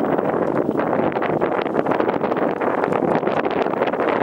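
Wind blowing across the microphone: a loud, steady rushing noise.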